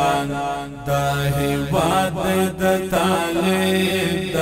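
Background vocal music: a voice singing a slow, chant-like song in long held notes, with no beat.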